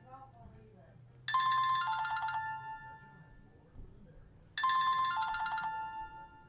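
Phone ringtone: a short melodic chime phrase of several stepping notes, sounding twice, about a second in and again near the end.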